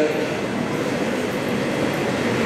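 Steady, even background noise with no distinct events: the room tone of a hall.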